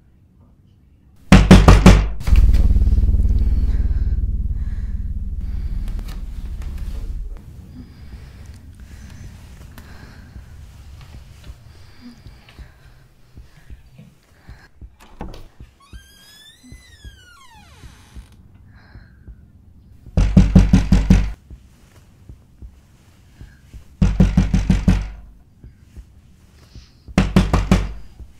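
Horror film sound effects: four bursts of rapid, loud knocking, the first about a second in and the others near the end. After the first burst comes a low rumbling drone that fades away over about five seconds, and midway a wavering high tone glides downward.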